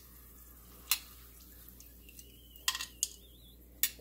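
A metal kitchen utensil knocks against an enamelled pot and a small bowl while aromatics are lifted out of hot frying oil: a handful of sharp clicks, one about a second in and a cluster near the end, over a faint steady hiss.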